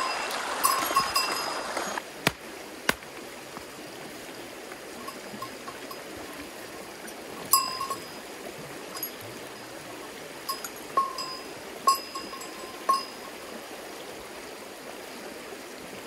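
A fast, muddy creek running with snowmelt water makes a steady rush. Over it come a couple of sharp knocks early on, then from about halfway through several short, ringing metallic clinks, all at the same pitch.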